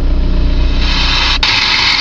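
Car stereo switched to its FM tuner giving a loud, even hiss of radio static about a second in, with a brief click-like break partway through, over the steady low idle of the 1.9 TDI diesel engine.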